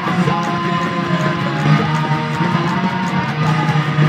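Electric guitar playing a punk rock song.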